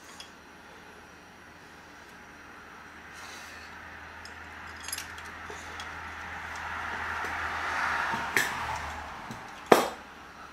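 Metal parts clinking and tapping as a fabricated bracket is tried on a small engine, with a sharp metallic knock near the end, the loudest sound. A soft rushing noise swells through the middle and fades about a second before the end.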